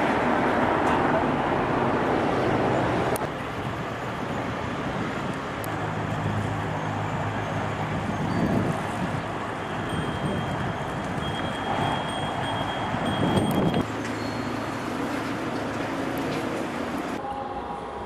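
Steady background rumble and hiss of ambient noise that changes abruptly about three seconds in, again around fourteen seconds, and shortly before the end. A faint thin high tone runs through the middle.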